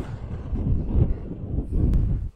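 Wind buffeting the microphone in gusts, a loud low rumble with no other sound over it.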